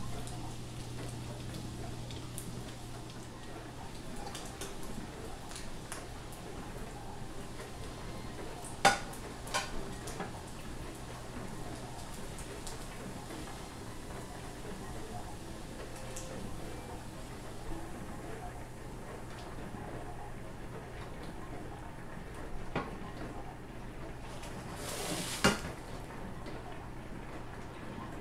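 Tuna patties frying in butter in a nonstick skillet, a steady low sizzle over a constant hum. A couple of sharp clicks of the spatula against the pan come about nine seconds in, and a louder brief clatter near the end.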